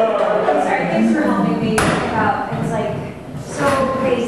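A white metal folding chair is set down on the stage floor with a single sharp thump a little under two seconds in, over voices.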